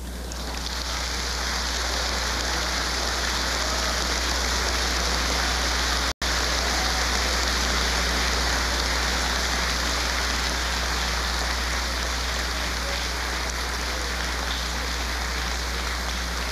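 Large crowd applauding, a steady even clapping that runs on without a break in the speech, with a momentary cut-out of all sound about six seconds in.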